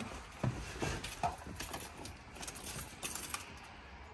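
Car keys jangling with a few light clicks and knocks as the driver gets into the Jaguar and works the ignition key. The battery is completely dead, so the engine does not crank.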